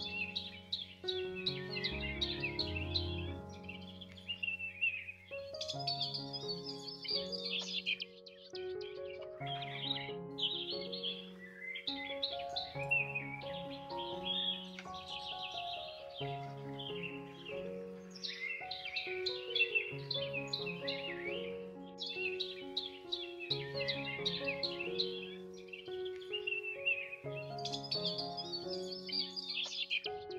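Calm background music of slow held notes, with birdsong chirping busily over it throughout.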